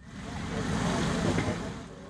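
Road traffic noise on a city street: a vehicle's engine and tyres swell in and ease off again.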